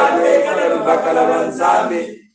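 Church congregation singing a hymn together, many voices and no instruments.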